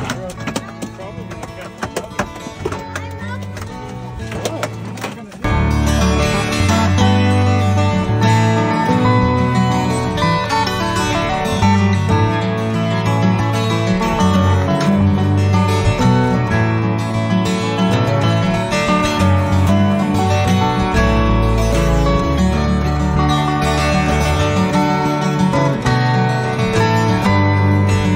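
For the first five seconds there is quieter live sound from the boat. Then a guitar-led background music track with a steady beat starts abruptly and carries on.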